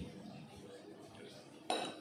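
A metal fork strikes a ceramic plate once near the end with a sharp, short-ringing clink, amid quieter handling of food and cutlery on the plate.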